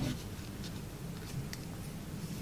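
Folded origami paper rustling and crinkling under the fingers as the flaps of a paper ninja star are tucked in, with a sharper click right at the start and a few light ticks after.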